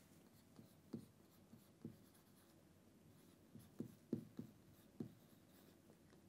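Faint strokes of a marker pen writing on a whiteboard: about seven short strokes, several of them close together in the second half.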